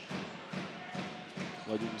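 Crowd in the indoor handball arena clapping and thumping in a steady rhythm, about four beats a second, over a general crowd din.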